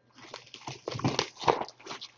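Cardboard trading-card box being torn open by hand: a run of irregular ripping and crinkling noises, loudest about one and a half seconds in.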